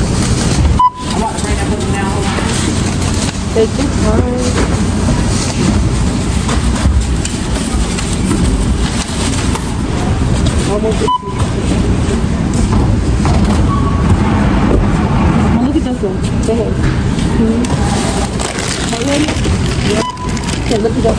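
Busy supermarket checkout-lane noise: indistinct background chatter and store bustle. Three short single beeps come about a second in, around eleven seconds, and at the end.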